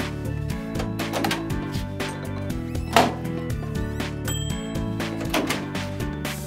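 Background music with many quick, irregular pops over it: popcorn popping in a microwave oven. A short high beep sounds about four seconds in.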